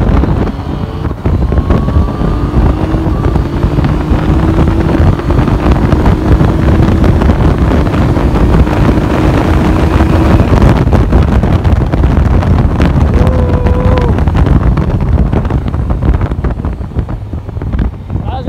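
Motorcycle being ridden at speed, with heavy wind noise on the microphone over the engine. The engine's pitch rises slowly for several seconds as it accelerates. A short wavering tone comes a little past the middle.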